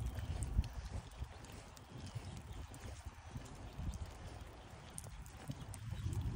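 Footsteps of a person walking across a grassy yard, irregular low thuds with small clicks and rustles, over a faint low rumble.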